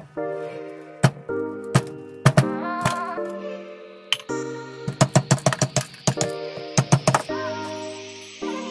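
Background music with sustained chords and sharp clicks, including a quick even run of clicks in the second half, and a hiss that rises in pitch from about halfway through.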